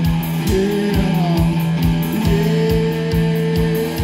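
Live blues-rock played by two semi-hollow electric guitars and a drum kit, with no bass. A guitar line slides and bends in pitch over a sustained low note and a steady kick-drum beat.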